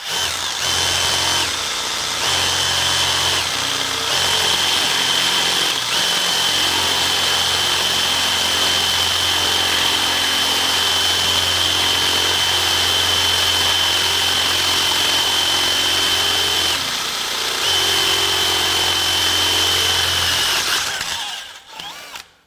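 DeWalt XR cordless drill boring a half-inch Spyder Mach Blue Stinger bit through 3/8-inch plate steel, following an eighth-inch pilot hole. The motor runs under load with a steady high whine and let-ups a few times, the longest about three quarters of the way through, then stops a second before the end.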